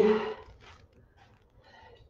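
A woman's voice ending a drawn-out count of "three" in the first half-second, followed by faint short breaths during the exercise.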